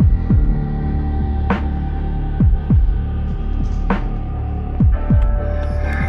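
Spooky Halloween sound-effect track: a deep throbbing drone with paired, heartbeat-like low thumps about every two and a half seconds and a sharp click between them. Near the end a higher tone comes in.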